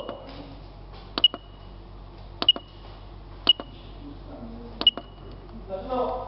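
Keypad of a feeder boiler's electronic controller being pressed to step through its menu: about five presses, each a sharp click followed by a short high beep, roughly one every second and a bit.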